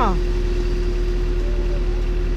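Wheeled excavator's diesel engine running steadily, a constant hum with a single held tone over a low drone.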